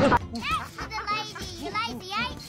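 A cartoon child character's voice laughing in a run of short "ah" cries, each rising and falling in pitch, with the last one loudest.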